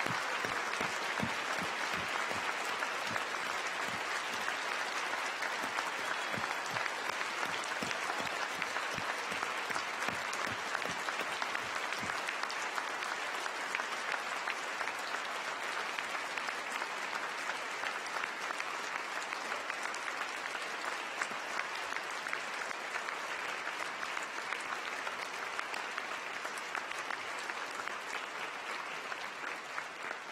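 A large audience applauding continuously, many hands clapping at once, easing off slightly near the end.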